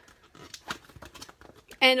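Light crinkling and a few soft clicks of a clear plastic die packet being handled and turned over, before a woman's voice comes in near the end.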